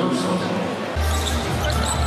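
Basketball arena game sound: crowd noise in a large hall, with a basketball being dribbled on the hardwood court. A deep rumble comes in about halfway through.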